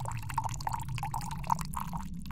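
Sound effect of liquid pouring and bubbling, a rapid irregular run of short drip-like blips over a steady low hum.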